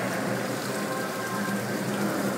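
Water poured from a metal pot splashing steadily over a stone lingam and into the basin beneath, during a ritual bathing of the idol.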